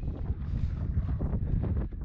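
Wind buffeting the microphone in a steady low rumble, with footsteps crunching on a loose gravel track.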